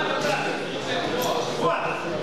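Several voices of spectators and coaches calling out around a boxing ring during the bout, in a large hall.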